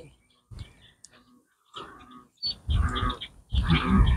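Animal calls, faint at first and then louder as a run of short repeated calls from about two and a half seconds in.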